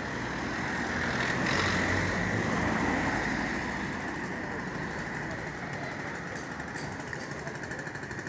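Street traffic: a passing vehicle's engine and tyres swell to their loudest two to three seconds in and then fade into steady town street noise.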